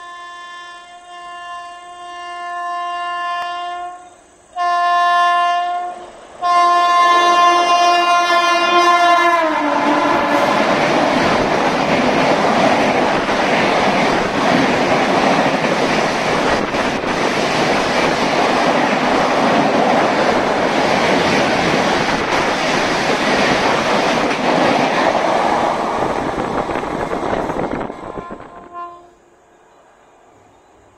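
WAP-7 electric locomotive sounding its horn three times as it approaches, growing louder; the last blast drops in pitch as the locomotive passes. Then comes the loud rush and rattle of the LHB coaches passing at full speed for about eighteen seconds, fading out near the end.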